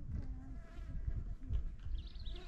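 An insect buzzing faintly nearby, over a low, uneven rumble.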